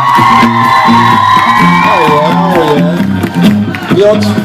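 Live band music: a bass line stepping up and down under drums, with a long held high note that wavers near the middle and fades out about three seconds in.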